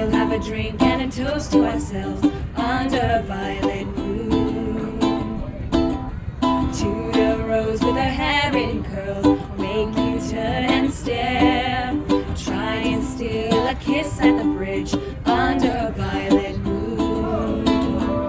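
A ukulele played as accompaniment while women sing a song, the music running continuously.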